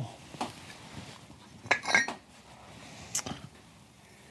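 A large glass jar being handled and opened, giving a few sharp glass clinks and knocks, the loudest a close pair about two seconds in.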